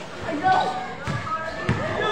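A basketball bouncing on a hard court floor: two thumps about half a second apart in the second half, with people shouting over them.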